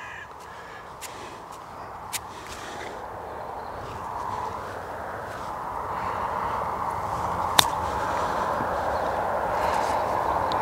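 A pitching wedge strikes a golf ball once, a single sharp click about three-quarters of the way through, on a low chip played to run out. Under it is a steady hiss that slowly grows louder.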